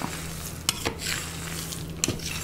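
A metal ladle stirring dry grains and nuts on a steel plate: a steady rustling hiss of the pieces shifting, with a few sharp clicks of the ladle against the plate.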